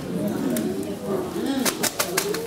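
A low, murmured voice with no clear words, with two or three sharp clicks near the end.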